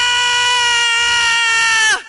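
A loud, single high vocal note held steady, dipping slightly in pitch just before it cuts off at the end.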